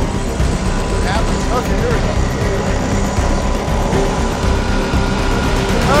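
Drill press running at full speed with a cheap Harbor Freight twist bit pressed dry into a tool-steel wrench, a steady loud machine rumble, under background music.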